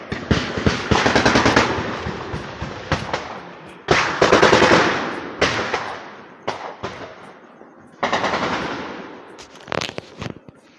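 Rapid gunfire in three long volleys, each trailing off slowly, with a few single shots between them and near the end.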